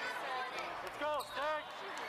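Two short shouted calls in quick succession, each rising and falling in pitch, about a second in. They sound over the echoing chatter of a busy volleyball hall, with faint thuds of balls on the courts.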